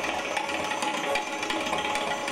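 Two sitars and tabla playing Hindustani classical music together in a fast passage of dense, rapidly repeated plucked strokes, with the tabla's low drum under them.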